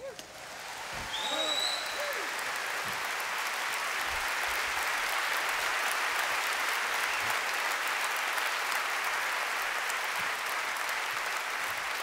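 Live concert audience applauding at the end of a song. The applause swells over the first couple of seconds, with shouted cheers and a whistle, then holds steady.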